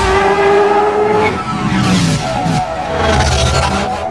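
Bajaj Pulsar 180 motorcycle engine revving, its pitch rising and falling, heaviest near the end, mixed over soundtrack music.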